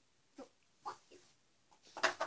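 Near silence: room tone, with three faint, brief squeaks about half a second, one second and just over a second in.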